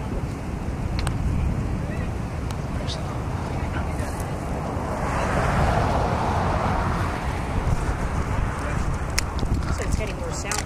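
Outdoor wind buffeting the camcorder microphone, a steady low rumble, with a louder hiss swelling for about two seconds in the middle.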